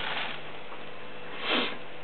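A short sniff about one and a half seconds in, over a steady hiss.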